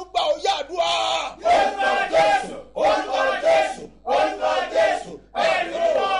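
A man's voice declaiming loudly in Yoruba, in chanted phrases, some held on one pitch for about a second.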